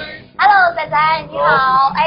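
The tail of the intro music fades out. About half a second in, a woman's loud, very high-pitched voice begins, with sliding pitch that sits between excited speech and singing.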